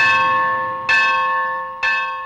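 A temple bell struck three times, about a second apart. Each strike rings on with a bright metallic tone that slowly fades.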